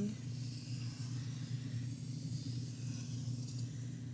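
Pencil drawing one long continuous line on paper: a faint, steady scratching hiss over a low electrical hum.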